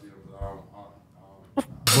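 Men talking low and faint, with a soft low thump about half a second in; near the end a short sharp noise, then loud speech starts again.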